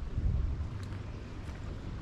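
Low rumble of wind buffeting the microphone, strongest in the first half second, then settling into a faint, even rush.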